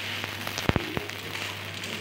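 Moong dal chilla sizzling in oil on a tawa, a steady frying hiss, with a few sharp clicks of a steel spatula against the pan near the middle.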